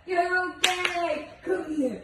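Husky making drawn-out, yowling howls that slide down in pitch, two calls in a row, with two sharp hand claps just over half a second in.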